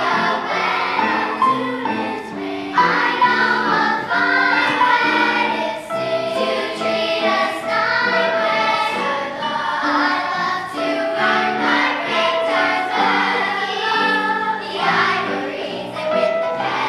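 Children's choir singing in unison with electric keyboard accompaniment, a continuous song with held notes.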